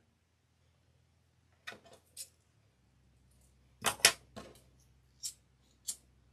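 Beads and small tools being handled on a work table while a cord is knotted: a scattering of sharp clicks and taps, the loudest pair about four seconds in.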